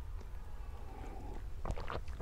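A pause in talk filled by a steady low background rumble, with a short vocal sound near the end as speech resumes.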